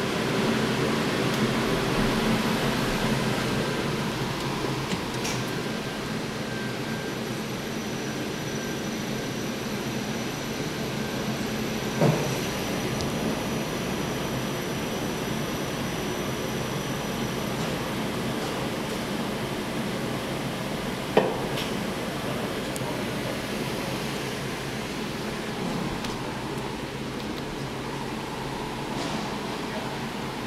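Kone EcoDisc machine-room-less elevator car running in its shaft, heard from inside the cab as a steady running hum and rush of air. Two short sharp knocks come through, one near the middle and one about two-thirds through.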